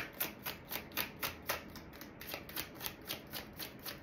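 A deck of tarot cards being shuffled by hand: a quick, even run of soft card slaps, about six a second.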